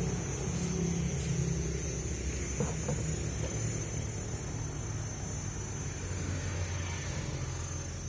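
Steady low outdoor rumble under the constant high-pitched drone of insects.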